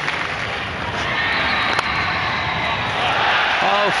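Crowd noise in a cricket ground, with a single sharp crack of bat on ball about two seconds in. The crowd grows louder near the end as the hit ball runs away to the boundary for four.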